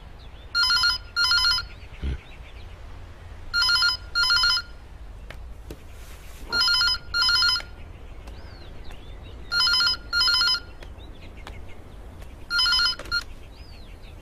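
Telephone ringing in double rings, five times about every three seconds, each ring a trilling tone. The last ring is cut short as the call is answered.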